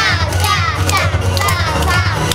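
Dance music with a steady low beat, with children's voices over it.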